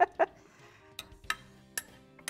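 A few sharp clinks of metal tongs and a serving spoon against a glass baking dish as roast chicken is held back while its drippings are poured off.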